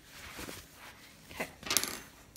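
Short bursts of rustling handling noise, with a sharper clattering rustle near the end.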